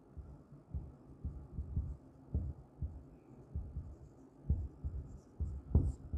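Marker writing on a whiteboard: a string of irregular, dull, low taps and strokes as words are written.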